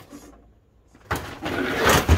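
Absima Sherpa RC crawler sliding and tumbling down a wooden plank ramp: a loud scraping clatter starts about a second in and builds toward the end.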